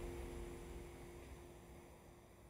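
The last chord of an acoustic guitar ringing out and dying away, a few held notes fading to almost nothing by the end.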